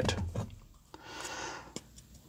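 A soft rustle about a second long, with a few light clicks around it, from a plastic jar of rooting hormone being picked up and a stem cutting pushed into the powder.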